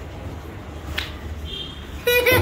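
A single sharp click about a second in, then a brief faint high tone, over a low steady background rumble.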